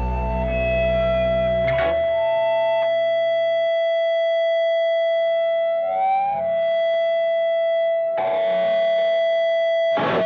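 Closing bars of a rock song: a guitar through effects holds a long sustained note while the bass drops away early on. A chord is struck about two seconds in and again near the end, with a short sliding phrase around the middle.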